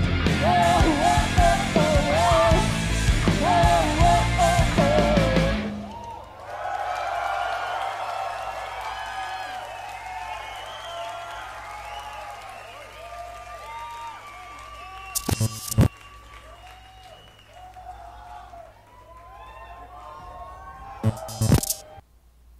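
Live rock band playing loud with a sung vocal line, which stops abruptly about six seconds in. A concert crowd then cheers and applauds, slowly fading, with a few sharp knocks near the end.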